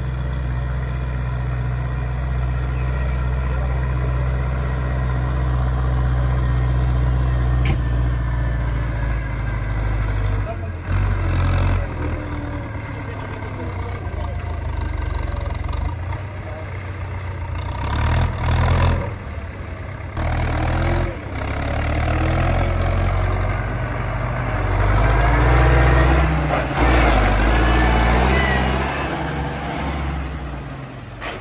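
Diesel farm tractor engines running as they haul loaded silage trailers, louder near the end as a red MTZ tractor passes close by.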